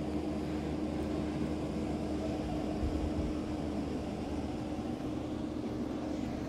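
Steady room hum with one constant faint tone, and a brief low bump of the phone being handled about three seconds in.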